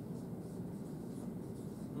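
Marker writing on a whiteboard: faint, short scratchy strokes over a low room hum.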